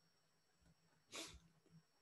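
Near silence, broken a little over a second in by one short, soft breath.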